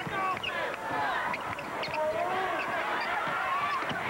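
Basketball shoes squeaking on a hardwood court during play: many short squeaks sliding up and down in pitch, with the sharp knock of a ball bounce near the end.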